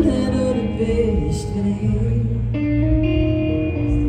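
Live band music with guitar, loud and steady, with a chord change about two and a half seconds in.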